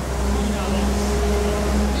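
A motor vehicle engine running in the street: a steady low rumble with a humming tone that holds throughout.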